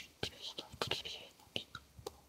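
Soft whispering, mostly hissed consonants with little voice, broken by a few sharp mouth clicks.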